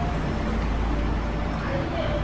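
Steady low background rumble with no distinct event in it.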